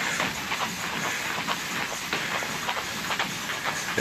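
Heavy battle ropes whipped in waves, slapping the gym floor in a fast, continuous clatter.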